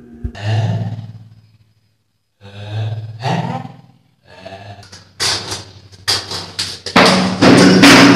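A man imitating a scooter with his voice: two wordless, buzzing engine-like sounds rising in pitch, then from about halfway a fast run of sharp clicking and knocking mouth sounds that grows loudest near the end.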